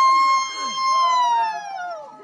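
Group of Naga men chanting: one high voice holds a long loud call that slides downward near the end, with another voice sounding lower beneath it.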